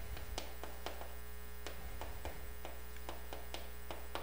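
Marker pen writing on a board: short, irregular taps as the tip meets the surface, over a steady electrical mains hum.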